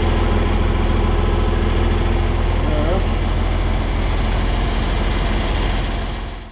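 John Deere 4020 tractor engine idling with a steady low rumble.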